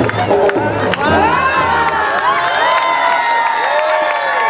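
A crowd, many of them children, cheering and shouting over dance music. About a second in, the bass fades and many high voices swell into long, overlapping cheers.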